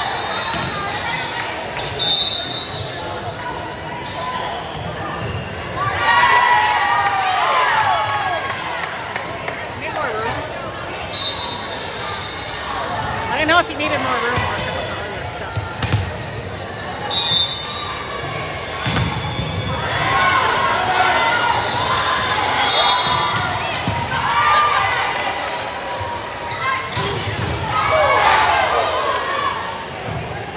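Volleyball game sounds in a gym: the referee's whistle blows short blasts several times, the ball is struck with sharp smacks, and players and spectators call out and cheer over steady crowd chatter.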